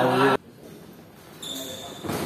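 A man's voice breaks off abruptly, then after a short lull a thin, high-pitched squeak lasts about half a second near the end, typical of court shoes skidding on the wooden badminton floor.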